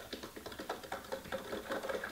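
A metal spoon stirring coffee grounds and water in a mason jar, making rapid, irregular light clicks and ticks against the inside of the jar.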